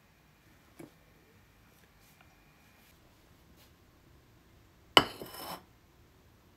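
Glassware clinking: one sharp clink about five seconds in, ringing briefly for about half a second, after a faint tap about a second in.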